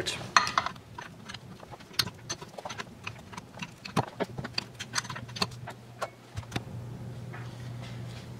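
Metal parts and tools being handled on a workbench: a string of sharp clinks, clicks and knocks, with a low steady hum coming in about halfway through.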